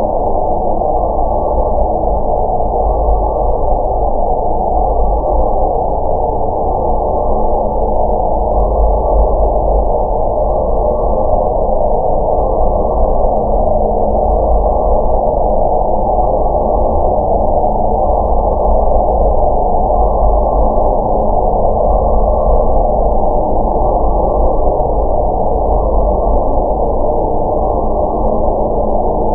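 Dark ambient horror drone: a loud, muffled, rumbling wash of sound with a low held tone beneath it, unchanging, with no beat or melody.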